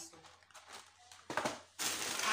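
Groceries being handled: a short rustle or knock about a second and a half in, as the cardboard dessert box is set down, then a louder rustle of packaging near the end as the pile of shopping is disturbed.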